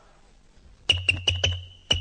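Quiz-show push-button buzzer set off by repeated slaps on the button: an electric buzz and a steady high tone, broken by rapid sharp clicks about five a second, starting about a second in.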